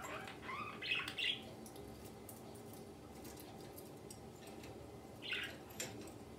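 Budgerigar chirping: a few short chirps in the first second or so and another about five seconds in, with faint scattered clicks between.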